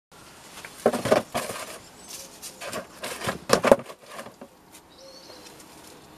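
Plastic plant pots and a seed tray being handled: a run of rustling knocks and clatters lasting about three and a half seconds, loudest about a second in and again near three and a half seconds.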